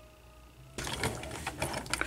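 Hands grabbing and handling a vintage Transformers Trailbreaker toy truck on a plastic playset floor: a quick run of small clicks and rattles that starts about three-quarters of a second in.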